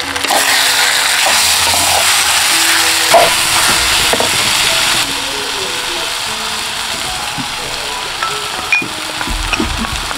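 Ripe jackfruit pieces sizzling and frying in hot oil in a clay pot, stirred with a wooden spoon. The sizzle is loudest in the first half and drops a step about halfway through.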